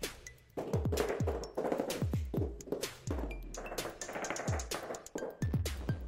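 Background electronic music with a steady beat of deep, quickly falling bass-drum hits.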